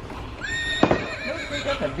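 Children's electronic animal sound book playing a recorded horse neigh through its small speaker, with a sharp click a little under a second in.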